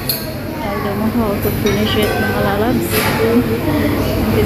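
Restaurant dining-room hubbub: other diners' voices talking, with clinks of cutlery and dishes and a sharp clink about three seconds in.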